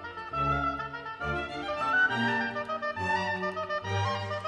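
Orchestral music playing a melody that moves in steps, with no break.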